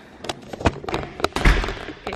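A string of light taps and knocks from footsteps and the handheld camera being moved, with one heavier thud about one and a half seconds in.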